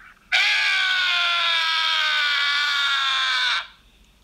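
A person's long, loud scream held for about three seconds, its pitch slowly falling, then cut off sharply.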